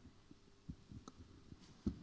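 Several soft low thumps from a handheld microphone being handled, in an otherwise quiet room; the last one, just before the end, is the loudest.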